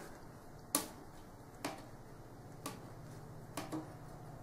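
Plastic comb tapping lightly on a tabletop: five faint clicks roughly a second apart, the first the loudest and the last two close together.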